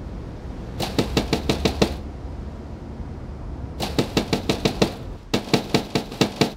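Rapid knocking on a door: three quick bursts of raps, each about a second long, one near the start, one in the middle and one near the end.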